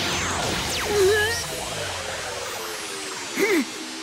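Cartoon ray-beam sound effect over action music: the beam fires with several falling whistling sweeps at the start, followed by a short strained cry about three and a half seconds in.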